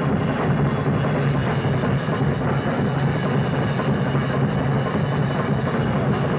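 Jazz drum kit played fast without a break: dense strokes on snare, toms and bass drum mixed with cymbals.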